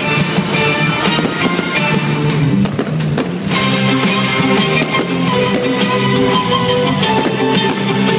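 Loud rock music with guitar and drums, playing steadily.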